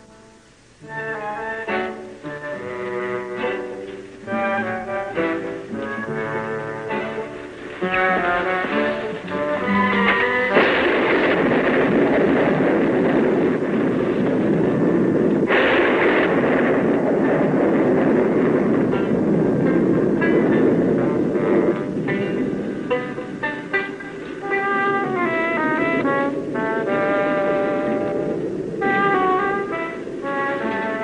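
Orchestral television score with brass playing short phrases. About ten seconds in, a long rumble of thunder swells under the music for some ten seconds, with a sharper clap midway through, before the music carries on alone.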